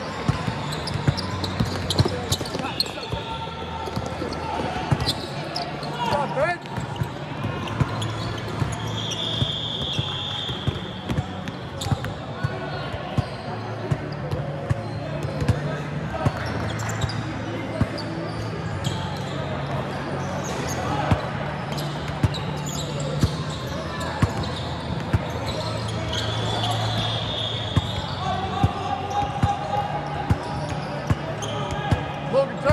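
Indoor basketball game: a ball bouncing on a hard court in irregular knocks, with indistinct voices of players and spectators, a few brief high squeals, and a steady low hum.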